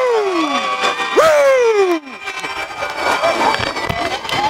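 Two long shouts, each jumping up and falling in pitch, about a second and a half apart, from men celebrating a win, with music underneath; after about two seconds the sound cuts to a quieter, mixed jumble of voices and noise.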